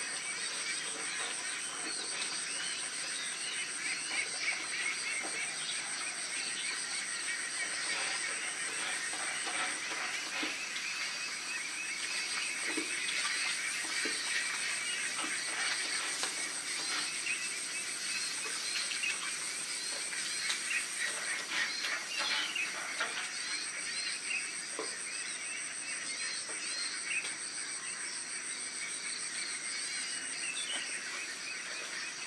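Chorus of frogs calling over a steady, high, pulsing insect trill, with a few bird chirps among them; the trill drops out briefly twice.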